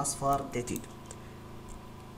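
A man's voice briefly says a price figure, then about a second of faint clicking at a computer.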